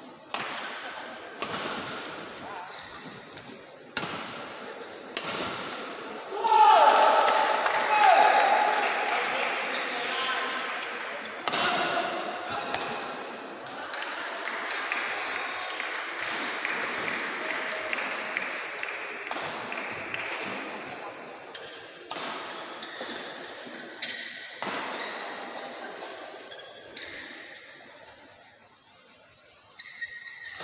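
Badminton racket strikes on a shuttlecock, sharp cracks about once a second in a large echoing hall. About six seconds in, a loud shout is followed by shouting and cheering voices that fade over the next fifteen seconds, with a few more sharp cracks later.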